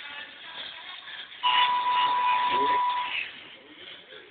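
A pop ballad with a female vocal playing through a Samsung U700 mobile phone's small built-in speaker, with a thin, narrow sound. About a second and a half in it gets much louder on a single high held note lasting under two seconds, then drops back.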